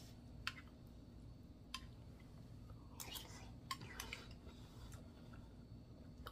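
A few faint clicks of a metal spoon against a ceramic bowl as stew is stirred and scooped, with quiet mouth sounds of tasting.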